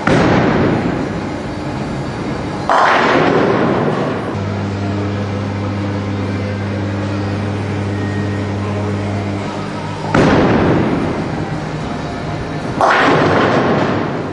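Tenpin bowling pins crashing as balls strike them, four times in two pairs about three seconds apart, each a sudden loud clatter dying away over a second or two. A steady low hum runs between the second and third crash.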